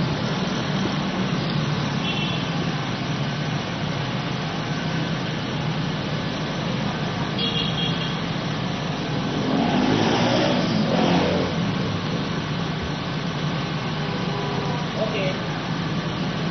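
Street traffic: a steady wash of motorcycle and car engines passing, with indistinct voices in the middle.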